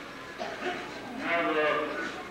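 A man's voice speaking in short phrases with pauses between them, a monk giving a talk.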